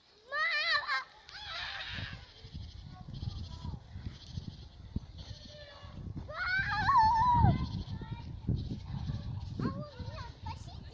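A small child's high-pitched, wavering squeals, a short one near the start and a longer one a few seconds later, over low wind rumble on the microphone.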